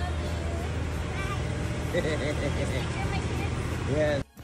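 Steady low engine rumble of idling vehicles, with voices talking over it in the middle.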